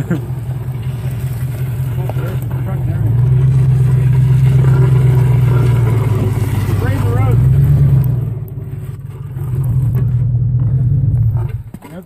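SUV engine revving under load as it pulls against a tow strap. It holds high for several seconds, eases off around eight seconds in, rises again and drops away just before the end.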